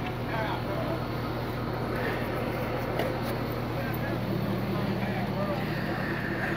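Tow truck engine idling: a steady low hum, with faint voices in the background.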